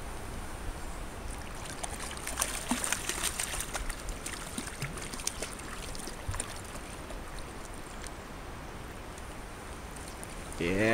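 Shallow stream water running around a wading angler, with a hooked trout splashing at the surface as it is landed by hand; the splashing is thickest from about two to five seconds in.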